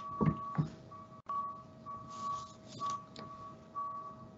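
Two faint steady tones: a lower one held constant and a higher one that keeps cutting out and coming back. There are two soft thumps in the first second.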